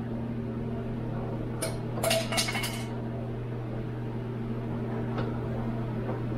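Plastic door trim panel of a 2007 Toyota 4Runner clicking and rattling as it is pried at, a quick cluster of clinks about two seconds in and a single click near the end, the panel still held by its clips. A steady low electrical hum runs underneath.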